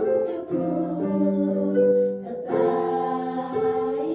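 Children's voices singing a slow hymn together with electronic keyboard accompaniment, in long held notes, with brief breaks between phrases about half a second in and again just past two seconds.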